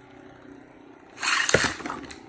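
A Beyblade spinning top whirring in a clear plastic stadium. A little past a second in, a second top is launched with a loud rasping whir and lands in the stadium with a sharp clack.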